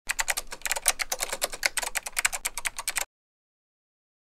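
Rapid typing on a computer keyboard, many quick keystrokes a second, stopping abruptly about three seconds in.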